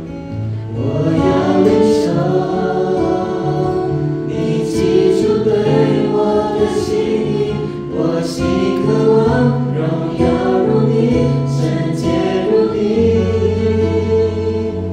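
A small mixed group of young men and women singing a Chinese worship song together, beginning about a second in, over a steady acoustic guitar accompaniment.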